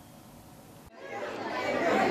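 Faint hiss, then an abrupt cut about a second in to people chattering in a room, the voices growing louder.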